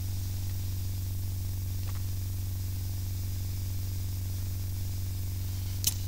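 Steady low electrical hum with a constant hiss from the sound system, with one faint click about two seconds in.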